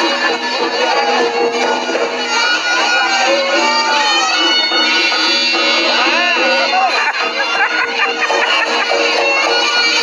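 Reog gamelan accompaniment: a slompret (Javanese shawm) playing a wavering, bending reedy melody over a steady drone, with a crowd talking underneath.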